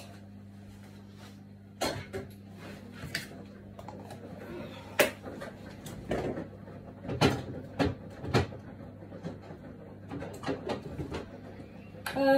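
Kitchen clatter: irregular knocks and clicks of cupboards and utensils being handled, the loudest about five seconds in and again around seven to eight seconds in, over a steady low hum.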